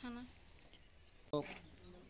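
Speech only: a girl's voice trailing off, a short pause, then a man's brief word.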